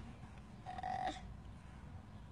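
A brief, faint, flat-pitched 'uh' from a person's voice about a second in, over a quiet low background hum.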